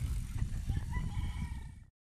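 Low, uneven rumble of wind on the microphone as a mountain bike rides past on a dirt trail, with faint thin calls in the distance above it; the sound cuts off suddenly just before the end.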